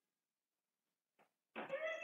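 Near silence, then one drawn-out cat meow starting about a second and a half in, bending in pitch and falling away at its end.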